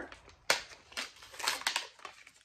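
Cardboard-and-plastic blister packaging of a lip tint being torn open by hand: a sharp crack about half a second in, then a few short crinkling rustles.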